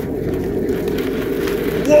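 Hydro jetter running steadily, its high-pressure hose jetting up a blocked drain line, with spray blowing back out of the pipe near the end.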